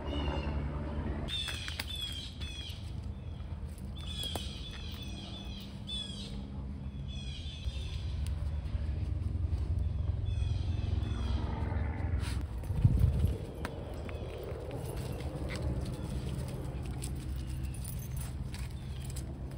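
Birds calling outdoors: a quick series of short, repeated chirps, each sweeping downward, for the first half, over a steady low rumble. A single louder thump comes about 13 seconds in.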